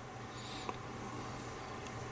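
Faint handling of a small plastic model in the fingers: a brief high squeak about half a second in and a small click just after, over a steady low hum.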